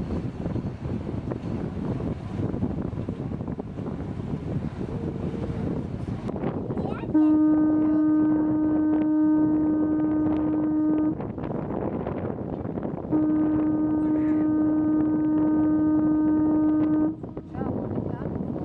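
A passenger ship's horn sounding two long, steady blasts of about four seconds each, two seconds apart, over a background of wind noise and voices.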